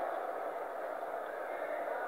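Steady, quiet hiss of the recording's background noise, with no speech and no other distinct sound.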